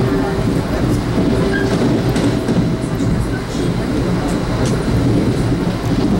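Steady rumble of a 1982 Comet IIM passenger coach running at speed, heard from inside the car: wheels on the rails with a few faint, scattered clicks.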